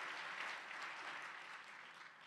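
Audience applauding, the clapping slowly dying down toward the end.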